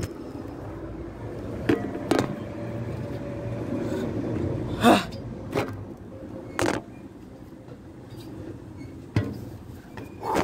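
Someone climbing a truck's steps with a phone in hand: several sharp knocks and bumps, the loudest about five seconds in, over a steady low rumble.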